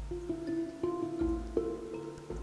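Background music played on a plucked string instrument, several held notes following one another.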